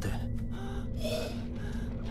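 A short, breathy gasp about a second in, over a low, steady background drone.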